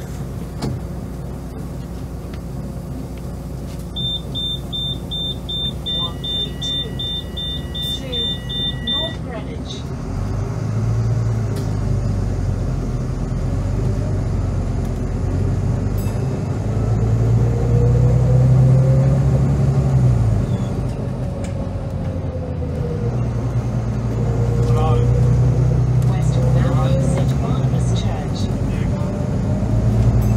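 Volvo B9TL bus's diesel engine pulling away and accelerating hard, heard from inside the passenger saloon: the engine note and a gearbox whine climb in two long surges, dropping back between gear changes. Before it moves off, a rapid electronic beeping runs for about five seconds.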